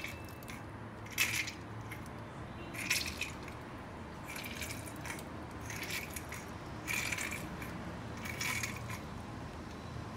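A lemon being pressed and twisted by hand on a plastic lemon juicer, giving short wet squelches about every second and a half, six in all.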